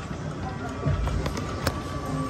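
Casino floor din: slot machine jingles and tones over background chatter, with a few low thuds about halfway through and one sharp click near the end.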